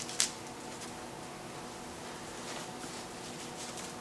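Plastic bag rustling and crinkling faintly as a boxed loudspeaker is worked out of it, with one brief sharp rustle a quarter second in, over a faint steady room hum.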